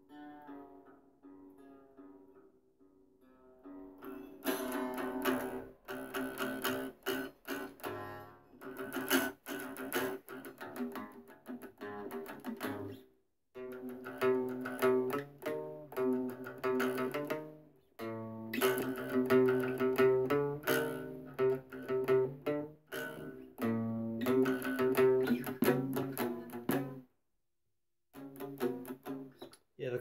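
A homemade three-string plucked instrument, built after a Japanese shamisen, played in fast picked phrases with a ringing, sitar-like tone. It starts softly, gets louder about four seconds in, and breaks off briefly about 13 and 18 seconds in and again near the end.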